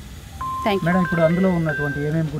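After a short pause, a woman speaks from about a third of the way in. Under her voice runs a simple electronic background melody of held single notes.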